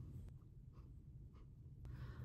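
Faint, soft brushing strokes of a Morphe eyeshadow brush sweeping powder across the eyelid, a handful of light strokes over near-silent room tone.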